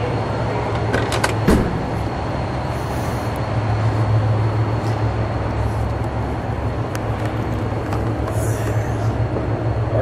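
The driver's door of a 1970 Plymouth Superbird being opened: a few sharp latch clicks and a knock about a second in. Under it runs a steady background din of a busy hall, with a low hum.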